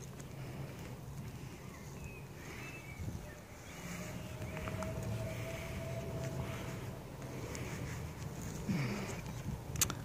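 A hand pressing and firming loose compost around a newly planted strawberry plant: faint, soft rustling of crumbly soil over a low steady background hum.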